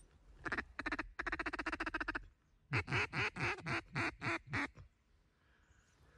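Mallard-style quacking: a fast run of short, clipped quacks, then a series of about eight louder drawn-out quacks that fade toward the end, the pattern of a mallard hen's chatter and greeting call.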